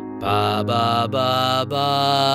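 A man's voice singing several held notes without clear words over a sustained piano chord, a G-sharp dominant seventh, the secondary dominant of E major.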